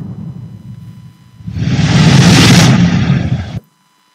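Sound effect from a video's closing logo animation: a deep rumble fades out, then a loud whoosh-and-rumble swell builds about a second and a half in and cuts off abruptly.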